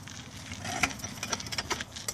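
Faint rustling and irregular light clicks from a phone being handled and swung around.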